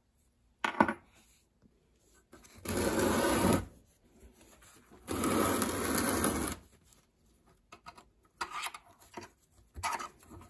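A metal clink, then two scraping rubs about a second long each as the cast-iron body of an Allied 5-inch Multi-Vise is turned on its swivel base, followed by a few light metal clicks near the end.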